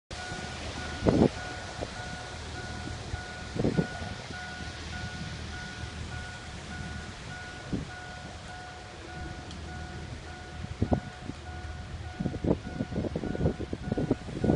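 A steady electronic beep, one pitch, pulsing evenly about three times a second, over a low rumble of wind on the microphone with a few dull thumps and bumps that come more often near the end.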